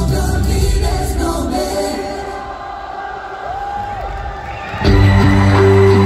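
Live pop concert heard from the audience: the band and singers end a song, leaving a quieter stretch of crowd noise with one voice briefly holding a note. About five seconds in, loud sustained keyboard chords start, opening the next piece.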